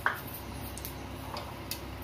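Oil heating in an aluminium kadai on a gas stove: a sharp click at the start, then a few faint ticks over a steady low hum.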